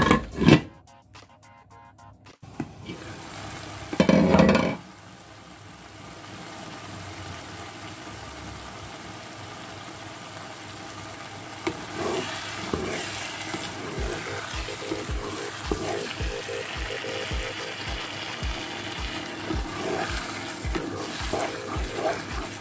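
Minced-meat tomato sauce sizzling steadily in a frying pan, with a brief loud burst about four seconds in. In the second half a wooden spatula stirs it, adding uneven scraping bumps over the sizzle.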